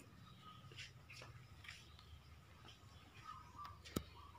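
Near silence: faint room tone with a low steady hum, a few light ticks, and one sharper click near the end.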